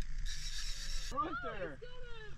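A fishing reel whirring briefly as a hooked fish is wound in, followed by excited high-pitched voices.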